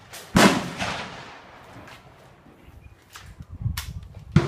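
Gunshots: a sharp crack at the start, a louder shot about half a second in that echoes for about a second, and another crack near the end.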